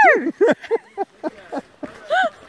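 A woman's high-pitched squeal right at the start, then a quick run of short, breathy giggles: nervous, frightened laughter.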